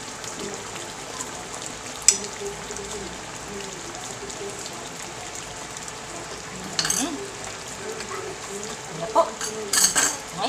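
Tilapia simmering in coconut milk in a nonstick frying pan, a steady bubbling sizzle. A metal spoon stirring and knocking against the pan gives a sharp click about two seconds in and a few more knocks near the end.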